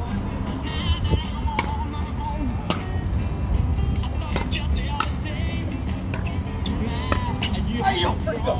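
Pickleball paddles striking the plastic ball during a rally: a series of sharp pops roughly a second apart, over background music with singing and a steady low rumble.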